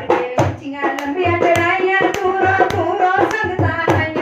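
A woman singing a devotional Mata Rani bhajan over a steady beat of hand claps and a hand drum, about two strokes a second.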